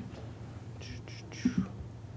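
Handling noise at a lectern as belongings are gathered up: a soft hiss-like rustle, then two quick low thumps about a second and a half in.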